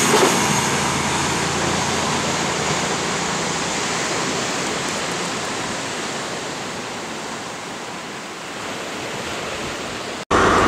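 Steady rushing noise of a CrossCountry Voyager diesel train running on the line, mixed with the wash of the sea. The noise slowly fades, then lifts slightly near the end.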